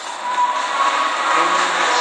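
Steady background hiss and hum from the surroundings, with a faint high steady tone, opening with a single sharp click.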